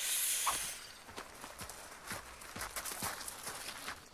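Footsteps on gravel, irregular steps several a second, after a short hiss near the start.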